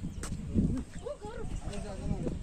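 Quiet, indistinct talking over wind rumbling and buffeting on the phone's microphone.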